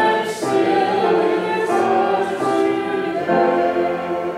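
Congregation singing a hymn together with keyboard accompaniment, moving through sustained notes that change about once a second.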